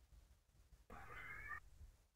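Near silence broken by one faint, short, high-pitched cry lasting under a second, about a second in.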